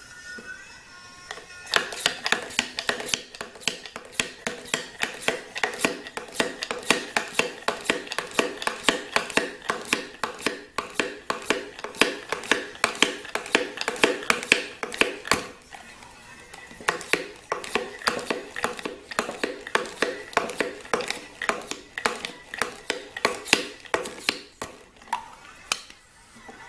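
Hand vacuum pump being worked rapidly on a vacuum canister's lid, drawing the air out: a fast string of sharp clicks, several a second, with a short break past the middle. Faint music from a phone sealed inside the canister plays underneath.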